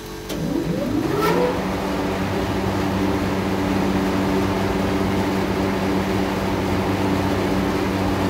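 An electric motor on an R22 refrigeration chiller starts up about a third of a second in, its hum rising in pitch over about a second as it comes up to speed. It then runs with a steady, even hum.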